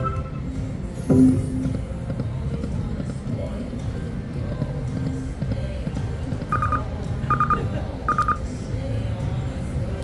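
Video slot machine playing its game music and spin sound effects over a low casino din, with three short high chimes evenly spaced a little under a second apart in the second half.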